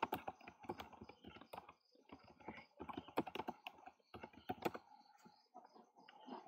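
Computer keyboard typing: faint, quick, irregular keystrokes in several short runs, thinning out near the end.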